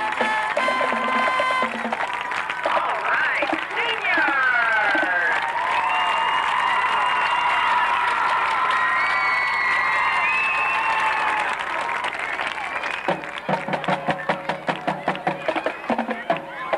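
High school marching band playing, the brass holding bright chords while the crowd cheers and applauds. About thirteen seconds in, the chords give way to a drum beat of about four strokes a second.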